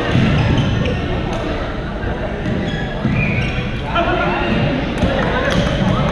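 Badminton play in a large, echoing gym: sneakers squeaking on the court floor and sharp racket hits on the shuttlecock, under chatter from many players.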